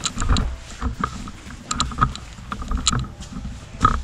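Handheld-camera handling noise and footsteps on a concrete floor: a low rumble with a scattering of irregular clicks and knocks.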